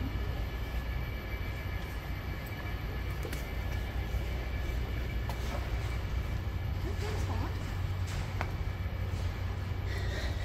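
Steady low rumble and hiss of a large, echoing hall's background noise, with faint voices of other people briefly about seven seconds in.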